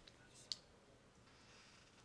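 Near silence with two light clicks of a stylus on a tablet PC screen, the second and sharper one about half a second in, as handwriting is finished on the screen.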